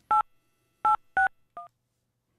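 Four short touch-tone (DTMF) beeps on the launch control voice net, each two steady tones sounded together: one at the start, then three more in quick succession, the last one fainter.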